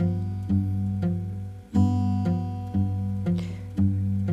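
Steel-string acoustic guitar fingerpicked with a thumbpick: a G7 chord with the thumb alternating bass notes, about two plucks a second, the treble strings ringing over the bass.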